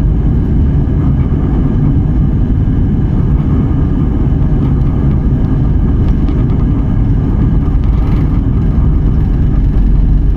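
Jet airliner heard from inside the cabin as it rolls along the runway: a steady, loud rumble of engines and wheels, with faint steady whining tones above it, swelling slightly near the end.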